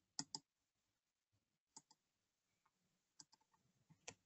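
Near silence with four faint computer mouse clicks: two close together just after the start, one in the middle and one near the end.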